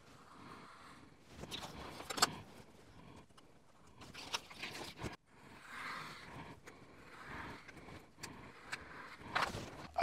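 Scalpel blade drawn along a steel rule, slicing sticky-backed abrasive sharpening sheets into strips on a cutting mat: a series of faint scratchy strokes, with a sharper click about two seconds in.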